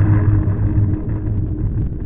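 Harsh noise music: a loud, dense, deep rumbling drone with a steady hum under it. A hissing, crackling upper layer thins out over the first second or so and returns shortly after, as part of a repeating loop.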